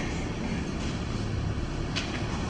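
Steady background noise of a large room: a low rumble with a hiss over it, and no voice.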